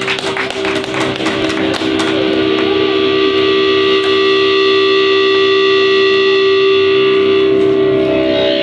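Amplified electric guitar: a few sharp clicks and taps from the strings and handling, then a long, steady held note that sustains from about two seconds in.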